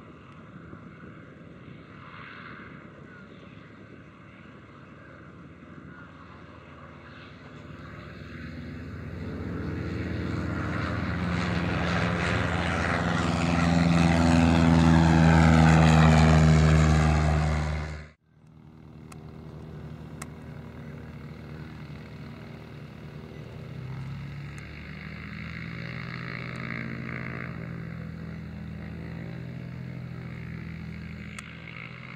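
Cessna 152's four-cylinder Lycoming engine and propeller running at takeoff power, growing steadily louder as the plane climbs out close by, then cut off suddenly a little past halfway. A fainter, steady propeller-plane engine drone follows.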